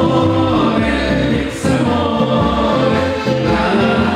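Live folk-schlager band music: a Steirische Harmonika (Styrian diatonic button accordion) and an upright double bass playing a steady oom-pah beat, with two voices singing together.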